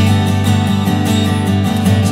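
Acoustic guitar strumming chords in a pause between sung lines.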